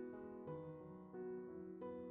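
Soft background piano music, with new notes sounding about every half second to a second.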